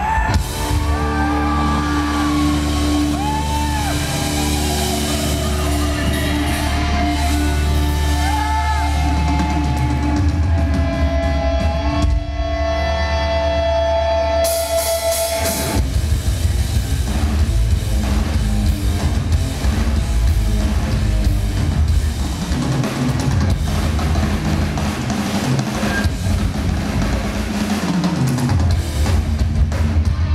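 Heavy metal band playing live: held, bending guitar notes ring over a sustained low drone, then about halfway through the drums and the full band come in with a driving rhythm.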